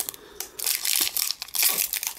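Crinkling of a Pokémon Next Destinies booster pack's foil wrapper as it is picked up and handled, a dense crackle starting about half a second in.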